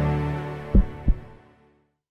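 Logo-intro music: a sustained synth chord fading out, with two deep thumps in quick succession past the middle, like a heartbeat.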